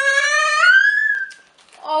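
Toddler crying in a tantrum: one long wail that rises in pitch and breaks off just over a second in.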